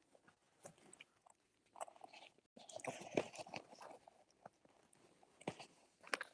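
Faint rustling and small clicks of a fabric wallet being handled, with a busier stretch around the middle and a sharper click near the end.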